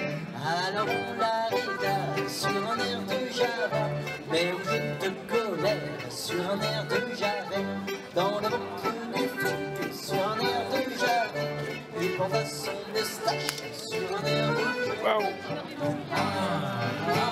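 Live dance band playing an old-time French dance tune with a steady bass beat.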